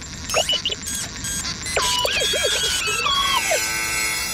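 Synthesized electronic bleeps and warbling tones that glide and jump up and down in pitch, in the manner of cartoon robot chatter, over a music track.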